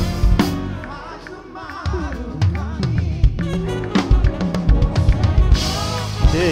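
Live worship band heard from a drum-cam mix: a drum kit with kick and snare hits over the rest of the band. The band drops back briefly about a second in, then builds again with denser drum strokes toward the end.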